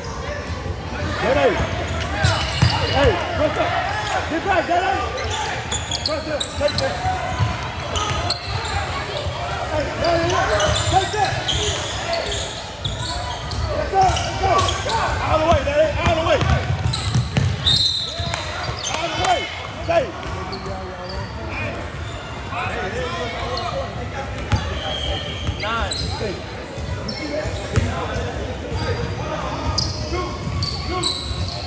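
A basketball bouncing on a gym floor, with many overlapping voices of players and spectators echoing around a large gymnasium.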